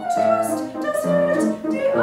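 Soprano singing with grand piano accompaniment: she holds a high sung line while the piano plays repeated waltz chords underneath, about two a second.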